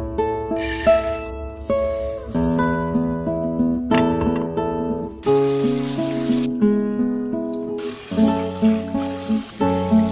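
Acoustic guitar music without singing. Under it, in the second half, comes the hiss of a kitchen tap running water over rice in a pot.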